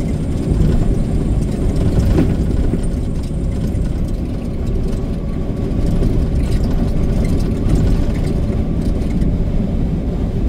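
Steady engine and road noise inside a semi-truck's cab while driving, a dense, even low drone.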